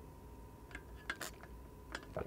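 A few faint clicks and knocks as a tumbler with a straw is handled and sipped from, grouped about a second in with one more near the end.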